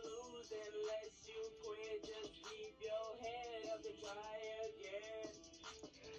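Faint playback of a hip-hop instrumental beat, with a quick, steady hi-hat ticking over a pitched melody line.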